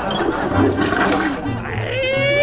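Toilet flushing: a steady rush of water.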